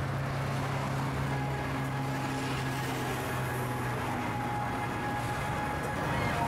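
Steady road-traffic noise on a highway, with the low hum of a vehicle engine running close by.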